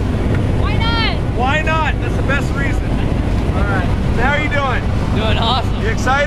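Loud, steady drone of a jump plane's engine and propeller, heard from inside the cabin, with raised voices coming through it in short bursts.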